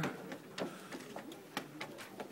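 Footsteps of several people climbing hard stairs: light, irregular taps and clicks of shoes on the steps.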